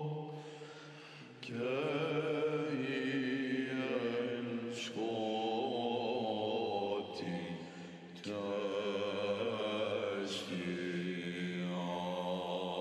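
Monastic male choir singing Greek Orthodox Byzantine chant: a wavering melodic line over a steady low held drone note (the ison). The melody pauses briefly about a second in and again around seven to eight seconds, then comes back in.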